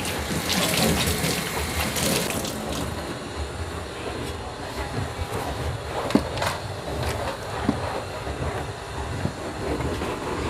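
A cloth rubbing and wiping across a refrigerator door, over a steady low rumble, with a few sharp clicks.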